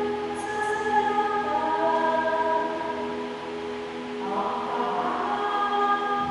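Slow sung hymn or chant during Mass: a woman singing into a handheld microphone over the church sound system, holding long notes that step from pitch to pitch every second or so.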